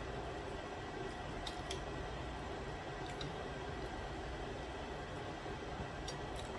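Quiet eating of a seafood boil: soft chewing and mouth sounds over steady room noise, with a few faint clicks from crab shell.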